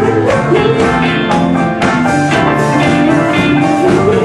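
Live band playing a song on guitars, with a regular beat.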